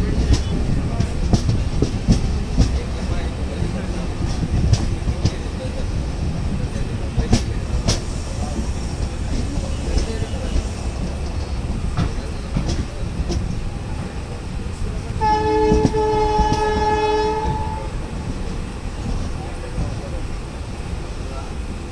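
Train coach running noise, with the wheels clicking irregularly over rail joints. About three-quarters of the way through, a locomotive horn sounds one steady blast of nearly three seconds.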